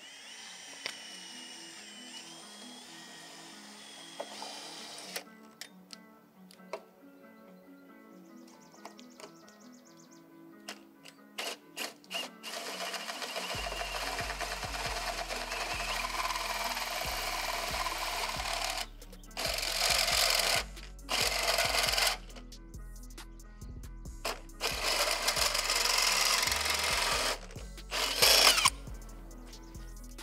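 Background music, with a bass line coming in about halfway, over a cordless Milwaukee drill cutting a 2-1/8 inch hole with a hole saw through a truck bumper. The drill runs in several bursts with short stops in the second half.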